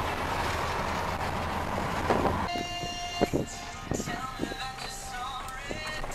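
Steady road noise inside a moving car's cabin. About halfway through it gives way abruptly to quieter music with held tones and a few light clicks.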